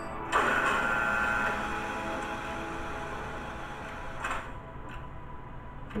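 Sci-fi sound effects from a TV episode's soundtrack: a sudden burst of noise with a few held tones about a third of a second in, fading slowly over several seconds, then a shorter noise about four seconds in.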